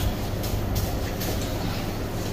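A steady low machine hum, with a few brief rustles and knocks as hanging lamb carcasses in cloth covers are handled and shifted on their hooks.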